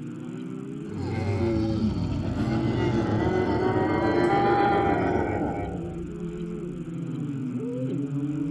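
Electronic sound-design soundscape: several gliding tones swoop up and down over a low drone. It swells louder and brighter from about a second in, then settles back again about six seconds in.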